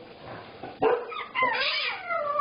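A dog barking twice, in two short, sharp calls about a second in.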